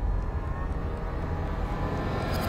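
Low, steady rumbling drone from a tense dramatic background score.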